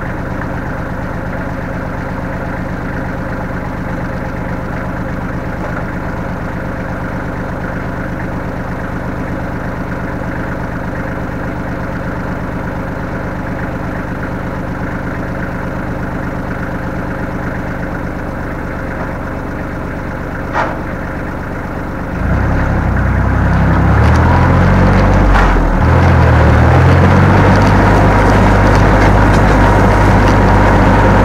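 Kubota tractor's diesel engine idling steadily, then revved up about two-thirds of the way through as the tractor pulls away, its pitch rising and dipping for a few seconds before settling into a louder, steady run. A short click comes just before the revving.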